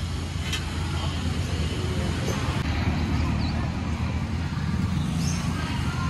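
Busy street background noise: a steady low traffic rumble with indistinct voices in the mix.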